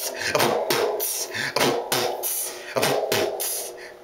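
A man beatboxing into a toy microphone: a rhythmic run of mouth-made kick thumps and hissing hi-hat sounds, a few strokes a second, fading near the end.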